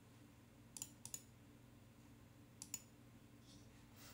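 Faint clicking from a computer being used: two pairs of short, sharp clicks, about a second in and again near three seconds, over a faint steady hum.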